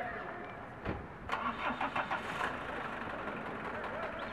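A motor vehicle's engine running, with a thump about a second in.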